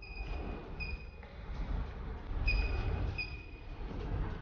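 Handheld UHF RFID reader beeping as it reads a tag on a water bottle, each beep signalling a successful read: four steady beeps in two pairs, the second pair about two and a half seconds in. A low rumble runs underneath.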